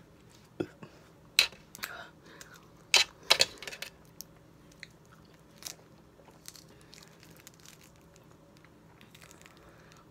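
A person eating raw lemon and lime pieces: a string of short, sharp mouth and biting noises, loudest in the first few seconds, then fewer and fainter ones.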